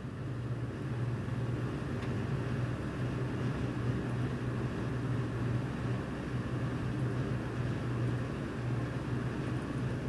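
A steady low rumble with a deep hum. It grows a little louder over the first second, then holds steady.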